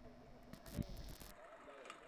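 Faint outdoor ambience with a soft, distant call about half a second in and a faint knock.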